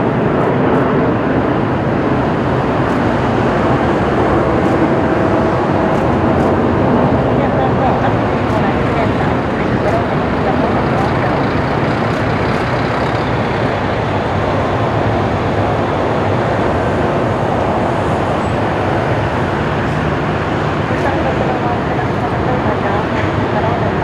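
Lufthansa Boeing 747-8's four GEnx turbofan engines at climb power just after takeoff: a loud, steady jet-engine noise that eases slightly toward the end.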